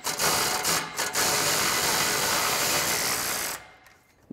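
Cordless ratchet with a 15 mm socket running down the nut of an exhaust band clamp: a short run, a brief break about a second in, then a longer steady run that stops shortly before the end. The clamp is only being snugged, not fully tightened.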